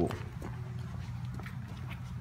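Toddlers' footsteps on brick pavers: a few light, irregular steps over a steady low background rumble.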